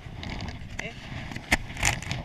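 Dog sled runners scraping and rumbling over packed snow, with a sharp knock about three quarters in and a short, louder crunching scrape near the end.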